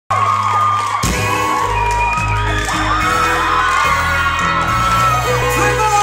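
A live rock band playing loud, with electric guitars and drums, heard from among the audience, with crowd whoops and voices over the music.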